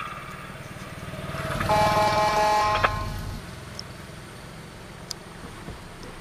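A small motorcycle passes close by the car, its sound swelling and fading over about two seconds. A steady tone holds for about a second at its loudest. The car's own engine drones low underneath.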